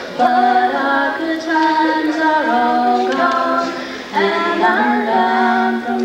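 A young woman singing a slow song into a microphone in long held notes, with acoustic guitar accompaniment; there is a short break for breath about four seconds in.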